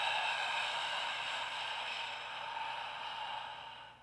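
A man's long, slow exhale through an open mouth, a breathy "ha" breath like fogging up a window, fading gradually and ending near the end. It is the out-breath of a paced breathing exercise, in for four, out for eight.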